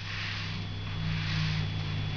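Marker pen sliding across paper as a wavy line is drawn, a faint uneven rubbing, over a steady low electrical hum.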